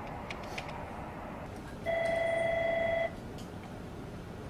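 A couple of faint keypad clicks, then an office telephone rings once with a warbling electronic ring lasting just over a second: an incoming call.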